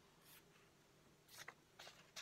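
Near silence with a few faint, brief paper rustles from a hand moving over printed paper pages.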